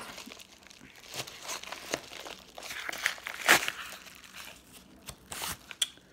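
A padded mailing envelope and its paper-wrapped contents crinkling and rustling in irregular handling strokes as the wrapped DVD is worked out of the envelope. The loudest rustle comes about three and a half seconds in.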